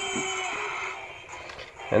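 Faint steady background sound with a few held low tones from a TV news clip playing through laptop speakers, fading over the first second. A narrator's voice begins at the very end.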